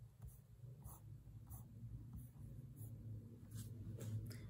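Faint, scattered light taps and scratchy handling sounds, about six over a few seconds, from hands tapping on a device to look something up, over a low steady hum.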